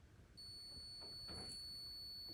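Fast-Pack heated obturation pen sounding a steady, high-pitched electronic tone while its plugger tip is switched on and heating, starting about half a second in.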